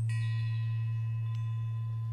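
Bell-like chimes ringing over a steady low drone that slowly fades, with a fresh light chime strike about a second and a half in.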